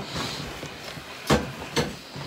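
Two short knocks about half a second apart, the first the louder, over faint rustling.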